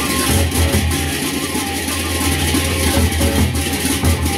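Sasak gendang beleq ensemble playing: the large double-headed gendang beleq drums beaten in a steady rhythm, with cymbal strokes and ringing gong tones over a sustained low hum.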